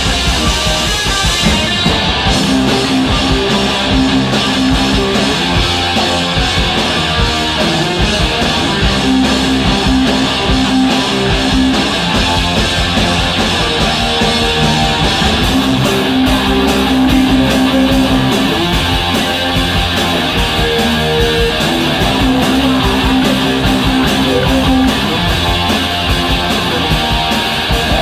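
Live rock trio playing loud and steady: electric guitar, bass guitar and drums together.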